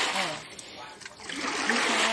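Standing rainwater being pushed in a sheet across a flooded concrete slab, rushing and splashing, in two surges: one at the start and another from about halfway through.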